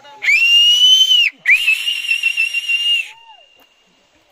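A person whistling loudly through the fingers: two long, high, piercing whistles with a brief break between them, the first sliding up at its start and dropping at its end, the second held with a slight waver.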